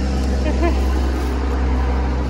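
A motor vehicle engine running with a steady low rumble and hum that holds unchanged throughout.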